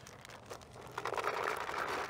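Paintballs being poured into a paintball hopper: a dense rattling rush of many small balls that starts about a second in, after a few faint clicks.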